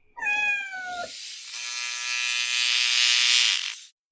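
A cat meows once, a single call falling in pitch over about a second. It is followed by a steady electric buzz lasting about two seconds that cuts off suddenly near the end.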